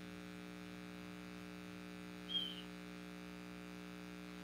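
Steady low electrical hum, with one short high-pitched chirp a little past halfway through.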